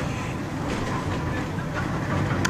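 Railway passenger carriage running along the track, heard from inside the carriage as a steady rolling noise of wheels on rails.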